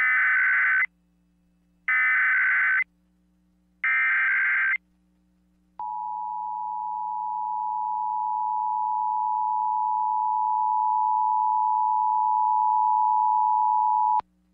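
Emergency Alert System SAME header: three identical bursts of shrill digital data tones, each under a second, about two seconds apart. About six seconds in, the steady two-tone EAS attention signal starts and holds for about eight seconds, growing slightly louder. Together they open a Required Monthly Test alert.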